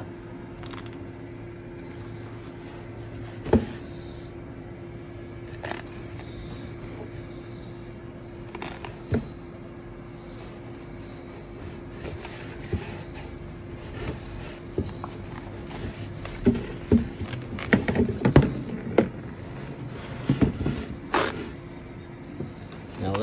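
Tulle netting being peeled and pulled off a spray-painted canvas: rustling and scraping of the fabric with a few knocks of the canvas against cardboard, scattered at first and busier in the last several seconds. A steady hum runs underneath.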